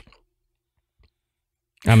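A pause between spoken sentences: near silence, with one faint short click about halfway through, before a man's voice resumes near the end.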